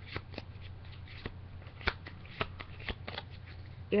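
Pokémon trading cards being handled and sorted by hand: a dozen or so light, irregular snaps and slides of card on card, the sharpest about two seconds in, over a low steady hum.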